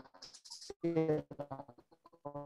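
A man's voice speaking in short broken phrases, heard through a video call's compressed audio.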